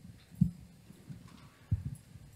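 Two dull low thumps about a second and a half apart, over quiet room tone.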